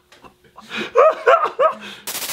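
A man laughing heartily, a quick run of about four short "ha" bursts starting about half a second in.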